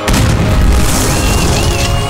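A firework burst: a sudden boom that opens into a low rumble and crackle, over background music, with faint high whistling glides about a second in.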